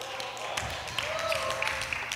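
Faint voices from the congregation responding in a large hall, with a few soft clicks.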